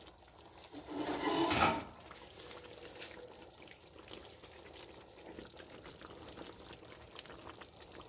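A spatula stirring a pot of thick red chile sauce with chunks of beef: one wet sloshing sound about a second in, lasting under a second, then only faint scattered ticks.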